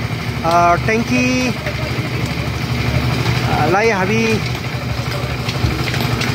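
A small engine running steadily on a construction site, with short stretches of voices over it about half a second in and again around four seconds.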